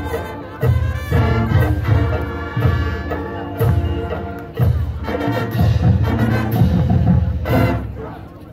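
Marching band of brass and drums playing with heavy low accents on the beat, ending on a loud final chord just before the end.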